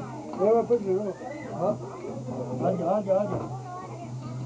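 Several men's voices talking over one another in a small room, over a steady low hum.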